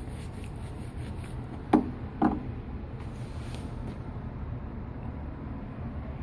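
Handling noise from a wet smartphone being wiped dry with a towel: two short knocks about half a second apart, about two seconds in, over a steady low background hum.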